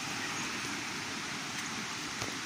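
Waterfall: a steady, even rush of falling water.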